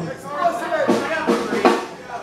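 A few loose, scattered hits on a drum kit, about four strikes in two seconds, with voices talking over them.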